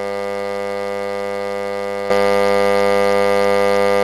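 A loud, steady, low-pitched electrical buzz: a glitch in the video call's audio. It jumps louder about two seconds in.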